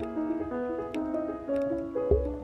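Solo piano music: a classical prelude, with notes struck one after another and left ringing.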